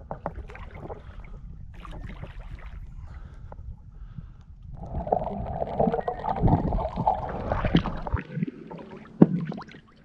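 Water lapping and splashing around an action camera held at the surface beside a small sailboat's hull. About five seconds in the camera goes under, and for about three seconds there is a louder, muffled rushing and bubbling of water. A single sharp knock comes near the end.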